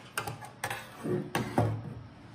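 Hard plastic parts of a robot vacuum's self-emptying base knocking and clicking as they are handled and set down on a wooden table, with three or four sharp clicks spread across the two seconds.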